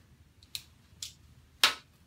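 Three short, sharp plastic clicks about half a second apart, the last the loudest, as a culture swab is handled and put away in its plastic transport tube.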